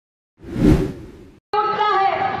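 A whoosh sound effect that swells and fades away within about a second. About one and a half seconds in, it cuts to a voice over loudspeakers with crowd noise behind it.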